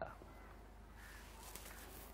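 Faint outdoor ambience with distant bird calls.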